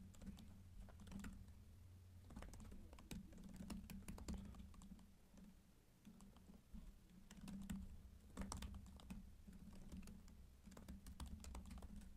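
Faint computer keyboard typing: irregular runs of keystrokes as lines of code are entered.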